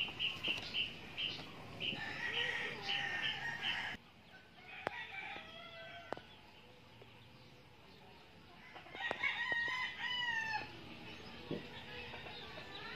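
Chickens calling, with a quick run of repeated calls over the first four seconds and a rooster crowing about nine seconds in.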